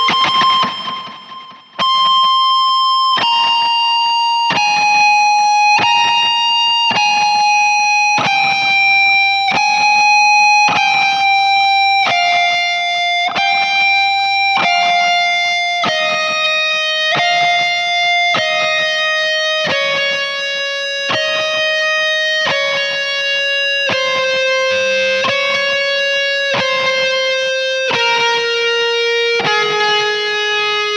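Fender Toronado electric guitar, tuned down a half step and played through a POD Studio GX amp modeller, playing a slow solo line of single sustained notes, about one a second, that steps gradually down in pitch. There is a short break near the start, about two seconds in.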